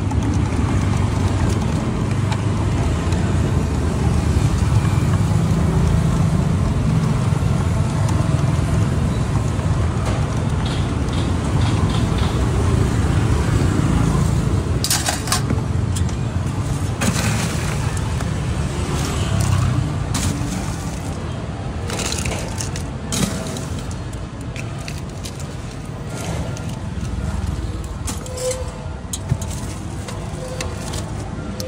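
A steady low rumble of street traffic runs through the first two-thirds. From about halfway, ice cubes are scooped from a cooler and dropped into a plastic cup, clattering sharply in several separate bursts.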